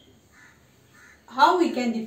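A marker scratching faintly on a whiteboard in a few short strokes, then, from about a second and a half in, a woman's voice speaking loudly with a drawn-out syllable.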